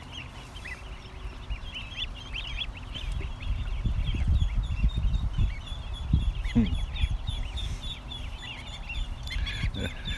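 A large flock of ducklings and goslings peeping constantly, a dense chatter of short, high chirps. A low rumble comes in through the middle.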